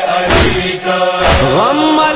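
A noha, a chanted lament, sung by a single voice over a steady beat of about two thumps a second; about halfway through, the voice glides up into a long held note.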